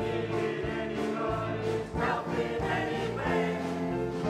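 A mixed choir of adults and children singing together in sustained, held phrases.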